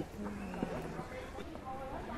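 Faint people's voices talking in the background, with a few light clicks or taps.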